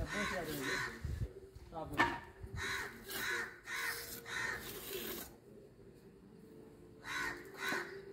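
A bird calling in a run of short, repeated calls about every half second, then a pause and two more calls near the end.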